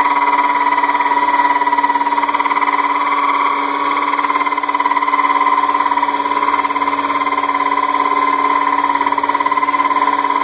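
Hand-held power drill running at high speed, a water-cooled 5/8-inch diamond hole saw grinding through the base of a glass wine bottle: a steady whine with a grinding noise under it. The cut is late on, close to breaking through the glass.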